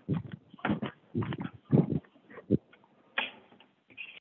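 Short, irregular voice-like bursts of background sound coming through a participant's unmuted phone line on a conference call, about half a dozen within a few seconds, thin and band-limited like telephone audio.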